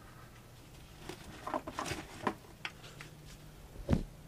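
Handling noises of tools and a boat alternator on a worktable: a scatter of light clicks and knocks, then one louder knock near the end.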